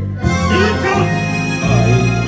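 Instrumental intro of an enka karaoke backing track playing over the café's speakers: steady bass notes under a wavering lead melody.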